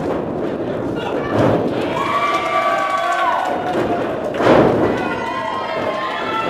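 Wrestlers' bodies thudding onto the ring canvas twice, a smaller impact about a second and a half in and the loudest about four and a half seconds in, with voices shouting in between.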